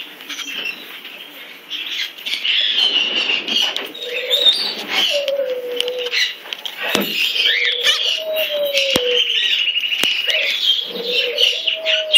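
White cockatoo making soft squawky chatter and mutterings right at the microphone, with a few low falling notes. Several sharp knocks come from its beak against the camera.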